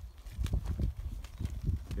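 Soft, irregular thuds and scuffs of horses' hooves stepping on loose dirt during groundwork.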